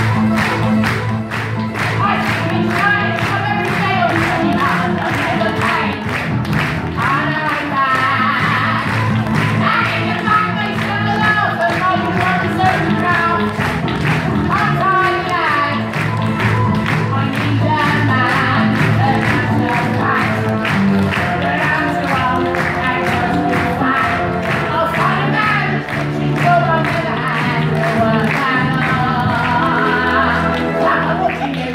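A song played from a recorded backing track with a steady beat, with a voice singing the tune over it throughout.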